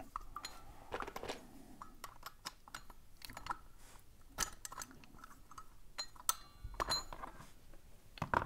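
Scattered light metallic clicks and clinks from needle-nose pliers gripping and pulling the locking rod out of a brass padlock and the steel shackle coming free. A few sharper clinks come after the middle, one with a brief metallic ring.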